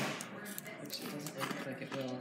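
Background chatter of voices in a restaurant dining room, with a couple of short crunchy clicks as battered fried fish is bitten into.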